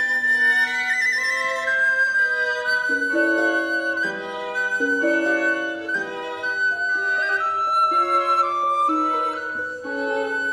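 Recorder, violin and harp trio playing classical chamber music, the recorder carrying a high melody of held and moving notes over the bowed violin and plucked harp.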